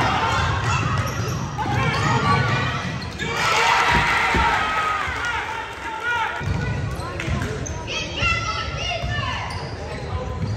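Basketball game play on a hardwood gym floor: a ball dribbling, many short sneaker squeaks, and players' and spectators' voices, all echoing in the large hall.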